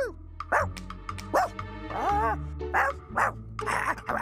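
Voiced bark and yip sounds from a cartoon dog character, a few short calls that rise and fall in pitch, over background music with a steady bass line.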